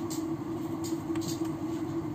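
Steady background hum and hiss with a few light, short clicks spaced unevenly through it.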